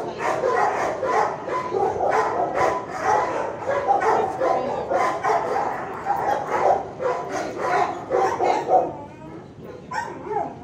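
Many shelter dogs barking at once, a continuous din of overlapping barks and yips that eases briefly near the end.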